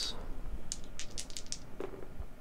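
Two block dice thrown onto a game mat, clattering in a quick run of light clicks about a second in.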